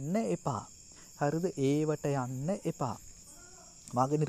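A man narrating in Sinhala, in two phrases with short pauses between them, over a steady high-pitched buzz in the background.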